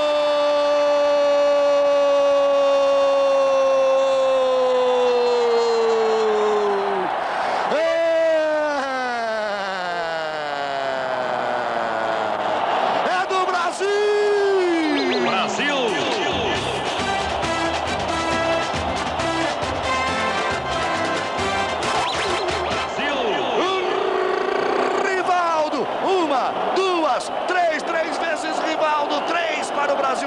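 A TV football commentator's drawn-out goal cry in Portuguese, one long held "Gooool" slowly falling in pitch over about seven seconds, then two shorter falling shouts. From about halfway through, music with a steady beat takes over.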